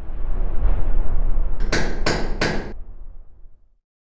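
Audio logo sound effect: a low rumble swells up, then three sharp hammer-like strikes land about a third of a second apart, and the sound dies away before the end.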